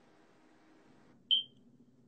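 A single short, high-pitched electronic beep about a second and a quarter in, over faint room hum.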